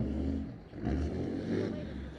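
A pickup truck driving past close by: a low engine rumble that swells twice.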